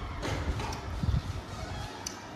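Close-miked eating sounds: chewing with soft wet mouth clicks, and fingers working rice and side dishes on a plate, a few irregular soft knocks about half a second apart.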